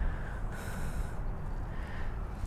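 A short, breathy puff of air, like a snort, about half a second in and lasting under a second, over a steady low rumble.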